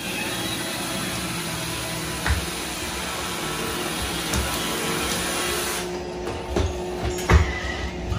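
Robot vacuum cleaner running steadily with a small child's weight riding on top, its motor and brushes making a continuous whirring hiss. Its higher hiss drops away about six seconds in, and a few knocks and bumps follow, the loudest about seven seconds in.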